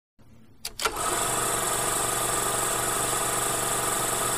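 A motor starting: a few sharp clicks in the first second, then a steady mechanical running sound at an even level.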